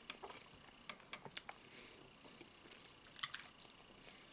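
Close-miked chewing of crispy fried chicken: irregular clusters of sharp crackles and wet clicks from the breading and the mouth, densest about three seconds in.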